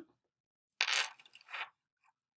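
A smartphone's push-notification alert as a Duo login request arrives: a short run of bright, clinking chime notes about a second in.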